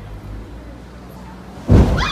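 Street manhole explosion: a steady low rumble, then a single sudden loud boom near the end as a fireball bursts up from the roadway.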